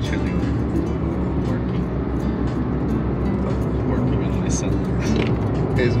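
Steady road and engine rumble inside a moving car's cabin, with laughter at the start.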